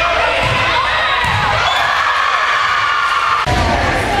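Crowd of spectators cheering and shouting in a gymnasium, many voices overlapping.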